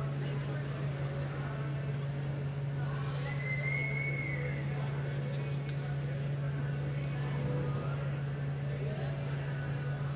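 A steady low hum throughout, with faint voices in the background. About three seconds in, a short high whistle-like tone is heard for about a second and a half.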